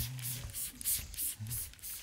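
Hand trigger spray bottle of diluted EM (effective microorganisms) solution being pumped in a quick run of short sprays, about three or four a second.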